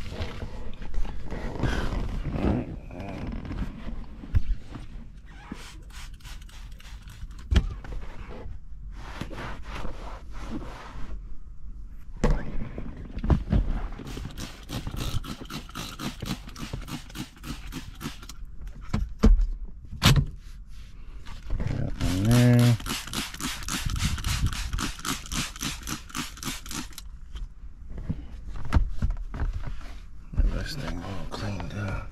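Hands cleaning a car interior: a cloth wiping and rubbing on the seat and center console, with handling knocks and thumps. Runs of quick hissing squirts from a trigger spray bottle of cleaner come in the middle and again later.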